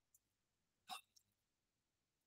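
Near silence: room tone with a few faint clicks, the loudest a short sharp one about a second in.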